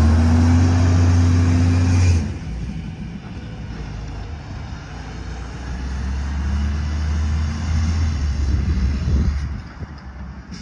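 Garbage truck's diesel engine running hard as the truck pulls away, dropping off sharply about two seconds in. It builds again for a few seconds later and eases off near the end as the truck moves off down the street.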